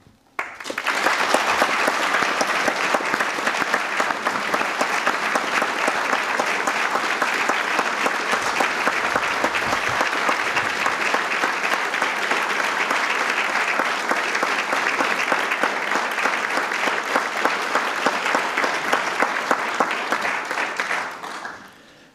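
Audience applauding steadily, starting about half a second in and dying away near the end.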